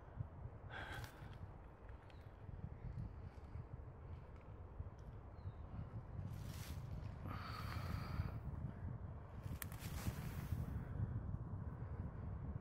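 Steady low rumble of distant motorway traffic, with a few sniffs and breaths close to the microphone.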